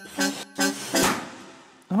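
Two short plucked-sounding musical notes from the cartoon score, then a cartoon pop sound effect about a second in as a hanging ball bursts, its noisy tail fading away over most of a second.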